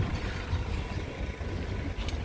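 Wind buffeting the microphone: an uneven low rumble under faint outdoor background noise.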